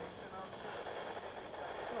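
Faint background voices of people talking, over a steady low outdoor hum.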